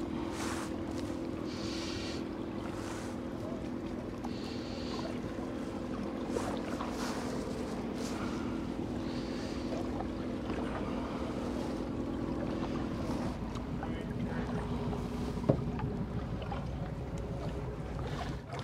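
Engine of a motor yacht cruising slowly past, a steady low drone that fades out about thirteen seconds in, over wind on the microphone and light water noise. A single sharp knock comes near the end.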